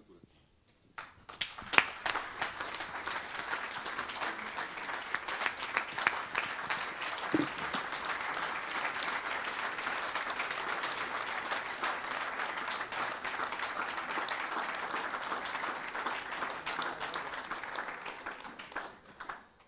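Audience applauding: after a brief silence the clapping starts about a second in, holds steady, and thins out near the end.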